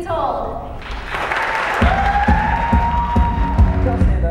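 Live pop-rock band with audience cheering and applause. About two seconds in, drums and bass come in with steady beats under a long held note that rises and then stays level.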